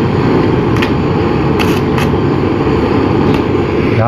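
A stick welder's arc through a carbon gouging rod crackling against aluminium as the metal is melted to fill a crack, with a few sharp pops, over the steady roar of a gas blowtorch pre-heating the spot. The arc breaks off at the very end as the rod is lifted.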